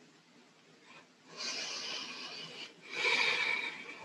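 A woman breathing audibly through a yoga movement: about a second of near silence, then two long breaths, one after the other.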